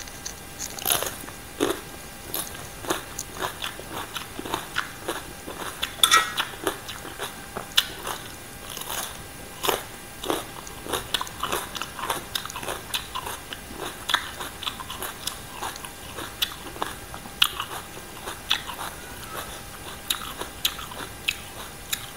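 Close-miked biting and chewing of crisp green papaya salad and raw vegetables: irregular sharp crunches, several a second at times, loudest around six seconds in.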